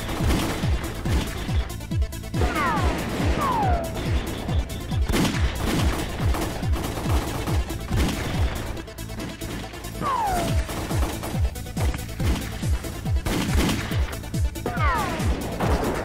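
Film shootout sound effects: rapid gunfire, about three to four shots a second, from rifles. Several falling ricochet whines are heard, a few seconds in, around ten seconds in, and near the end, with music underneath.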